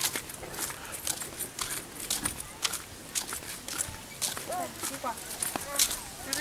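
Footsteps on a gritty paved path, crisp steps at an even walking pace of about two a second, with faint voices in the background during the second half.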